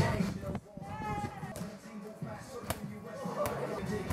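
A few sharp knocks, irregularly spaced, over faint voices and background music.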